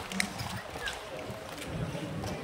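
Low background noise of an audience, with a few scattered claps and faint voices as applause dies away.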